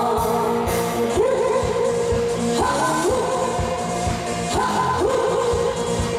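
A woman singing a pop song into a microphone over an amplified backing track with a steady beat. She holds long notes, sliding up into each new phrase about every two seconds.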